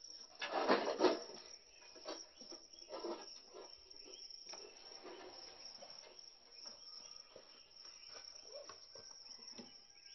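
Crickets chirping faintly and steadily in the night background. A brief louder sound comes about half a second to a second in.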